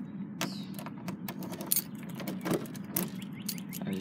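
A ring of keys jangling and clicking while a key is worked into the lock of a metal door lever handle, with scattered sharp metallic clicks. A steady low hum runs underneath.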